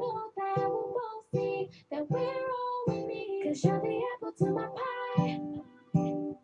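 Acoustic pop song: a female voice singing a melody over strummed guitar.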